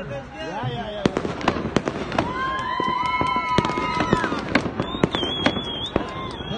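Fireworks going off: many sharp bangs and cracks in quick succession, starting about a second in and continuing to the end, with a long steady tone held for about two seconds in the middle.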